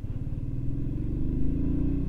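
Motorcycle engine pulling away from a standstill, its note rising steadily as it accelerates in gear.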